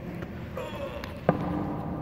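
A single sharp knock a little past halfway, inside an empty silo, followed by a faint steady hum.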